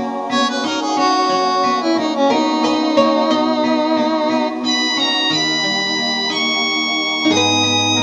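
Karaoke backing-track music played through a pair of NDT-TP12 PA speaker cabinets with 12-inch E12-300S bass drivers. It is an instrumental passage with a keyboard melody, and a deep bass note comes in near the end.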